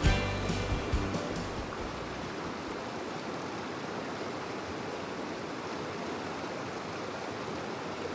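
Guitar background music dies away in the first second or two, leaving the steady rush of a rocky river's water flowing over stones.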